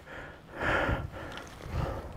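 Soft rustling and crumbling of a clod of soil held in gloved hands, in two short noisy spells, the louder one about half a second in.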